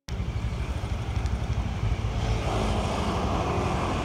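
Riding on a motorbike in city traffic: wind buffeting the microphone over road and traffic noise, starting suddenly, with a steady engine hum joining about halfway through.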